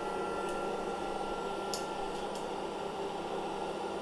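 Hot-air electric popcorn popper's fan blowing steadily, with a low hum in it. Three short faint clicks come through, about half a second, a second and three quarters, and two and a half seconds in, as the first kernels start to pop.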